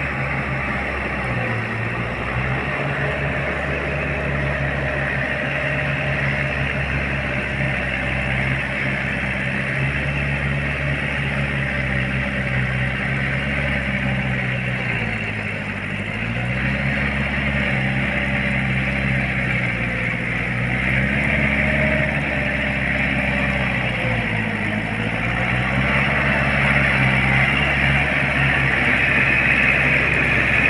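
Four-wheel farm tractor engine running steadily while it tills a wet, muddy field. Its note dips briefly twice, about halfway and again later. It gets louder near the end as the tractor comes closer.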